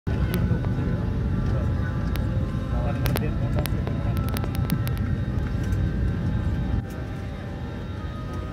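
Steady low rumble of an airliner cabin on the ground, with a run of sharp clicks in the first five seconds; the level drops a step near the end.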